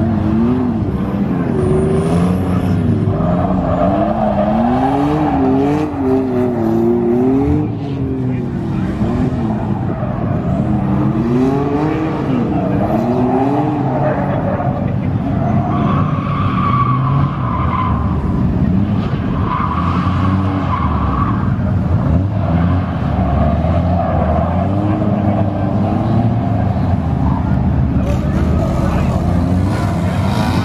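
Cars drifting on tarmac: engines revving up and down in quick waves as the throttle is worked through the slides, with tyre squeal coming and going.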